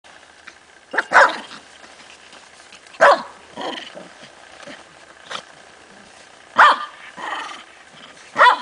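Tibetan Spaniels barking in play: short barks a second or two apart, the loudest about a second in, at three seconds and near the end.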